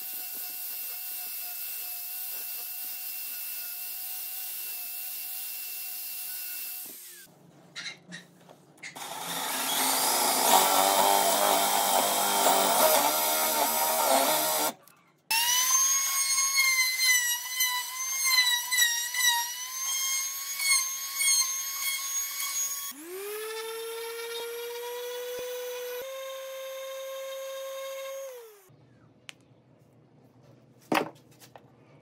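Power tools working a pine disc in turns. First an angle grinder fitted with a sanding pad runs with a steady whine. After a short pause a loud rough grinding stretch follows. Next a handheld trim router runs with a higher whine that wavers as it cuts into the wood, and finally a motor spins up with a rising tone, runs steadily and winds down shortly before the end.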